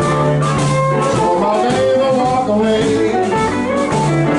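Live blues band playing: amplified blues harmonica over electric guitar, upright bass and drums, continuous and loud.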